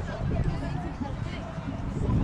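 Chatter of people in a walking crowd, faint voices over a steady low rumble on the phone microphone.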